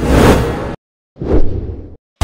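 Two whoosh transition sound effects from an animated TV news intro. The first lasts under a second. The second starts about a second in, peaks at once and fades away.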